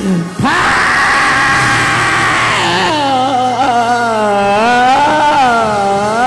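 A preacher's amplified voice holding one long, strained high note, then breaking into sung, wavering notes, over musical backing. This is the chanted, sung climax of a sermon.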